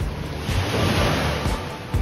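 Wind rushing over the microphone by open water, swelling louder in the middle, with background music underneath.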